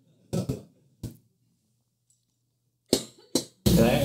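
A few short vocal bursts in the first second and a half, then two brief sounds around three seconds. Just before the end the background hiss and hum jump up suddenly and stay up.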